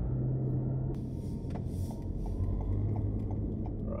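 Car cabin noise while driving: steady engine and road rumble, with the turn-signal indicator clicking about three times a second from about one and a half seconds in, ahead of a left turn.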